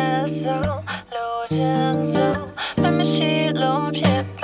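Pop song music: sustained chords, with a female voice singing a sliding melody over them and brief dips between phrases.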